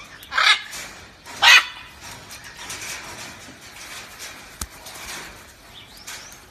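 Two short, harsh macaw squawks about a second apart near the start, the second the louder. Later a single sharp click.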